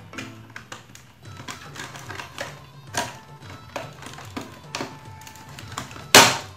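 Sharp, irregular clicks of the plastic bottom cover and its snap-fit clips on a Samsung NP300E5M laptop as a fingernail pries along the seam, with the loudest click about three seconds in. Quiet background music plays under it.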